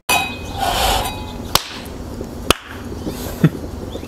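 Push-button igniter on a gas fire-pit table clicking, sharp single clicks about a second apart, after a short rush of hiss near the start.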